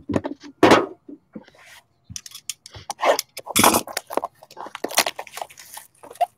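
Plastic wrap on a sealed trading-card box crinkling and tearing as it is unwrapped, with irregular scrapes and light knocks of the box against the table.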